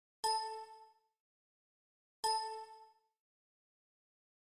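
A bell-like chime sound effect dinging twice, about two seconds apart, each strike ringing out and fading within a second.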